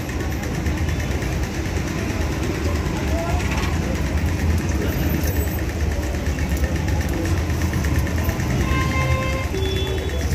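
Street traffic: a steady low rumble of idling and passing vehicle engines, with background voices. A short pitched tone sounds near the end.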